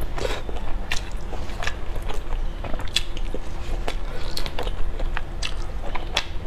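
Close-miked eating of sauced meatballs: biting and chewing, with sharp wet clicks about once a second.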